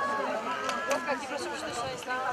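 Indistinct talk and calling from several people's voices, no words clear.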